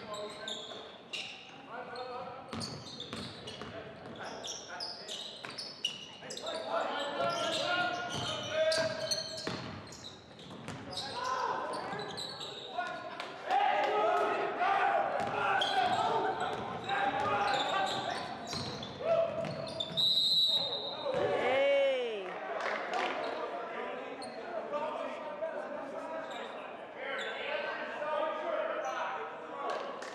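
Basketball game sounds in a gym: a ball dribbling on the hardwood floor and sneakers squeaking, with players and bench shouting. About two-thirds through, a referee's whistle blows briefly, followed by a long squeak that slides down in pitch.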